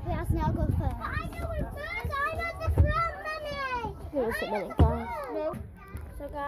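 Children's voices calling and shouting in a playground, with a few low thuds of handling around three and five seconds in.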